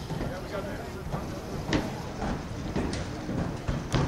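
Indistinct voices of players and onlookers over a steady low rumble, with a couple of sharp knocks, the loudest a little under two seconds in.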